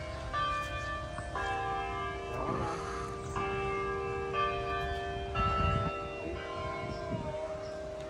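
Tower bells ringing a tune, several notes sounding together and a new set struck about every second, each left to ring on.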